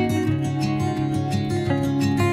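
Background music led by plucked acoustic guitar, with sustained notes and a gentle, regular rhythm.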